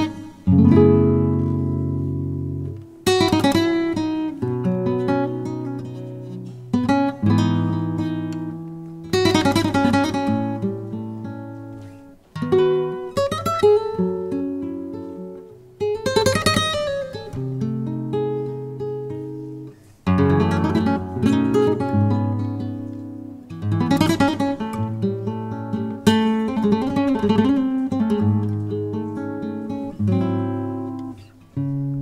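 Solo flamenco guitar: loud strummed chords, some in quick rolled flurries, each left to ring and fade, in phrases a few seconds apart.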